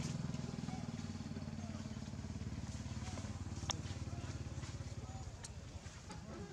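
A small engine running steadily at idle, a low hum with a fast even pulse, with one sharp click a little past halfway.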